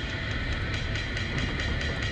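Steady low rumble of a car heard from inside its cabin, creeping in slow traffic, with faint background music.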